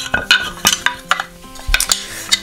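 Steel wood-turning lathe chisels clinking and knocking against one another and the workbench as they are gathered up by hand: a quick series of sharp clicks.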